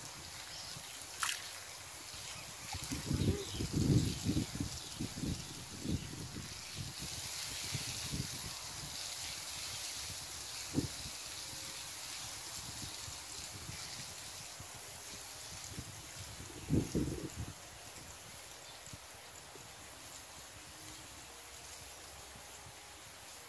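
Water sloshing and lapping around a person wading chest-deep, in two short bouts, a longer one a few seconds in and a brief one near the end, over a faint steady outdoor hiss.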